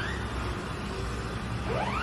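A siren sweeping upward in pitch, heard twice about two seconds apart, over a steady rushing noise.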